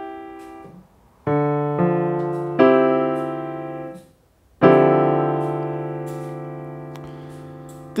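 Piano playing a D minor 11 voicing: D and F in the left hand under a C major triad (C, E, G) in the right. About a second in, the notes come in a few at a time and die away. About halfway, the whole chord is struck together and left to ring and fade.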